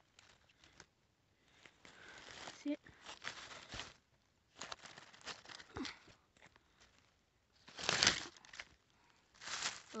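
Dry fallen leaves rustling and crackling in irregular bursts as they are disturbed, with the loudest burst about eight seconds in.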